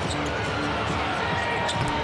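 A basketball being dribbled on a hardwood court over steady arena crowd noise, with a few short thuds near the end.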